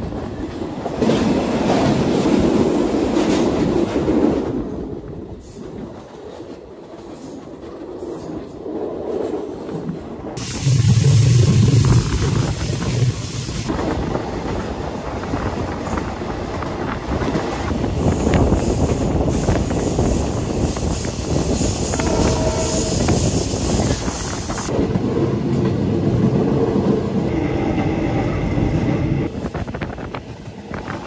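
Diesel-hauled passenger train running along the track, heard from beside a carriage at an open window: a steady rumble of wheels on rails with wind noise. There is a louder, deeper burst about eleven seconds in.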